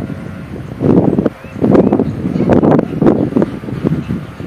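Wind buffeting the microphone in irregular, loud gusts, with a brief lull a little over a second in.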